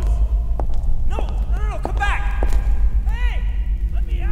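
Several short vocal sounds whose pitch rises and falls, without clear words, over a steady low hum.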